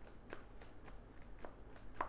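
A tarot deck being shuffled by hand: a few soft, light flicks of the cards.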